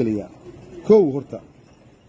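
A man's voice: the end of a spoken phrase, then one short drawn-out word or vocal sound about a second in.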